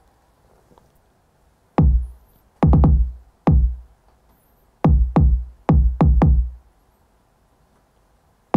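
A drill beat's kick drum pattern playing solo from FL Studio. About eight punchy kicks, each a short click with a deep boom falling in pitch, fall in uneven, syncopated groups with gaps between them. It sounds a bit off-time when heard apart from the rest of the beat.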